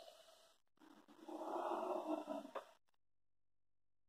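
A man breathing in deeply through his nose into cupped hands, one long breath starting about a second in and lasting about a second and a half.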